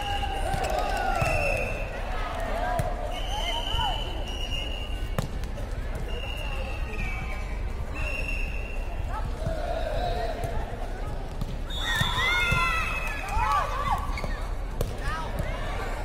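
Sounds of a women's air-volleyball rally in a sports hall: players calling and shouting, the light air-volleyball being hit and bouncing, and several high, steady squeals of about a second each, with a burst of shouting about three quarters of the way through.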